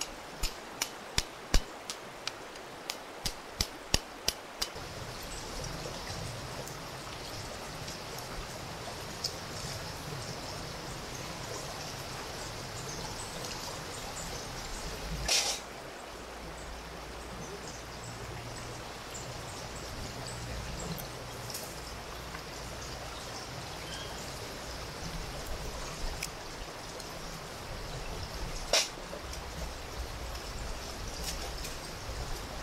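A shallow river running steadily. Over it, about a dozen sharp knocks in the first four seconds as a knife strikes a coconut shell, and two single knocks later as coconut pieces are worked loose with the knife.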